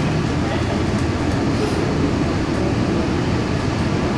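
Tokyo Metro 18000 series electric train running as it pulls away from a station, heard from inside the car: a steady rumble of wheels and car body, with the Mitsubishi SiC VVVF inverter drive very quiet.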